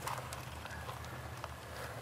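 Faint background ambience with a steady low hum and a few soft clicks and taps from hands working plants and a stone in a planter bowl.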